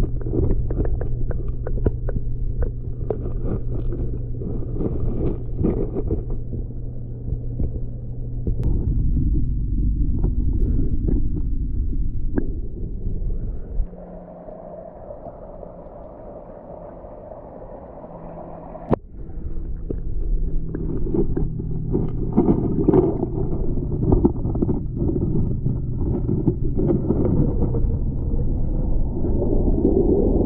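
Muffled low rumble of water heard underwater in a backyard pond with a waterfall, through a waterproof camera, with scattered small clicks. It drops quieter for a few seconds about halfway, with one sharp click as it returns, then runs louder again as bubbles churn near the waterfall.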